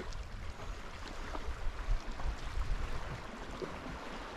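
Sea water washing and lapping against the rocks, with wind rumbling on the microphone and a few faint clicks.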